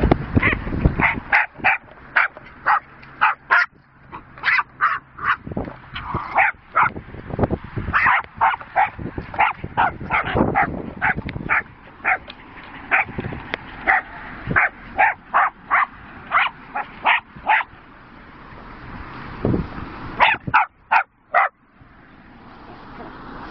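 Jack Russell terrier barking in a long run of short, sharp yapping barks, about two to three a second, pausing briefly near the end before a few more.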